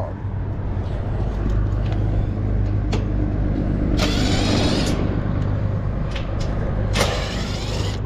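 Cordless driver running in two short bursts of about a second each, about halfway through and again near the end, backing out the access-panel screws of a rooftop air-conditioning unit. A steady low rumble runs underneath.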